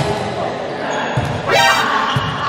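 A volleyball is struck with a sharp hit, and a dull thud follows about a second later. Through it runs the chatter of voices echoing in a large hall, and near the end a voice shouts, rising in pitch.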